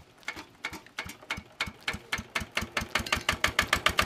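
A small belt-drive stationary engine starting up: its firing beats come slowly at first, about three a second, then quicken and grow louder as it picks up speed.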